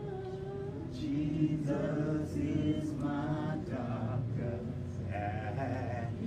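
Church congregation singing a gospel song together, in phrases of held notes.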